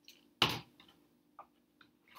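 A sharp plastic knock, then a few faint clicks, from a rotary cutter and an acrylic ruler being handled on a cutting mat.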